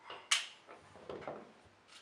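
A small steel screw dropped into a plastic lid, landing with one sharp click about a third of a second in, followed by quieter handling of the revolver's metal parts.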